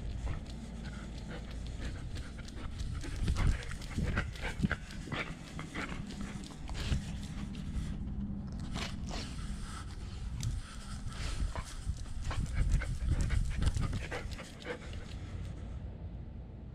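German Shepherd panting close to a camera strapped to its body, with irregular clicks and rubbing from its movement.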